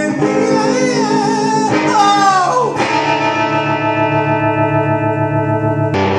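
Electric guitar playing, with sliding, bending pitches in the first few seconds and then a chord held and left ringing from about three seconds in.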